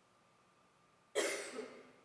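A single loud cough close to the microphone about a second in, after a brief quiet pause.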